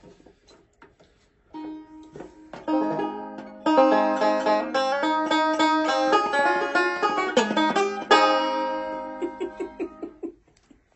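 Banjo picking a quick riff. After a few soft plucks it starts about one and a half seconds in, runs into fast rolls through the middle, and ends on ringing strummed chords that fade out.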